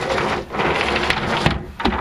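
A plywood slide-out tray rolling on its track wheels, which run on plain bushings and not ball bearings: a rumbling rattle of wood and metal, with a knock about one and a half seconds in.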